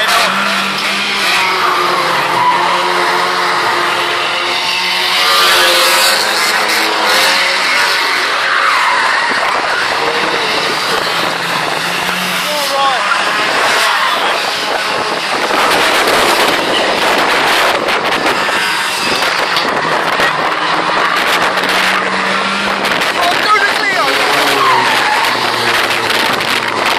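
Saloon-bodied race cars lapping an oval short track: several engines revving and running as the cars pass, rising and falling with each pass, with tyre squeal at times.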